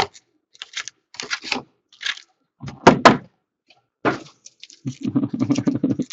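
Foil trading-card pack wrappers crinkling and rustling in the hands as packs are handled and opened, in short scattered bursts, with a sharper crackle about three seconds in.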